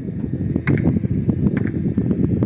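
Wind buffeting the phone's microphone, a loud low rumble that starts suddenly, with a few sharp clicks mixed in.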